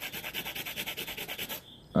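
Fast, even scratching or rubbing, about nine strokes a second, that stops about a second and a half in.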